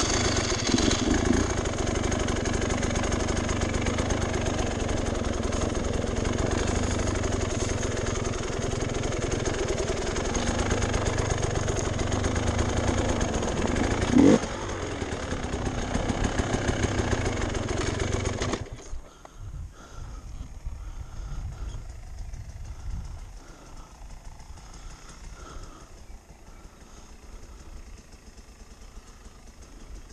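On-board enduro dirt bike engine running under way on a dirt trail. It starts abruptly, has a brief sharp rise in pitch about fourteen seconds in, and cuts off suddenly about two-thirds of the way through, leaving a much quieter engine sound.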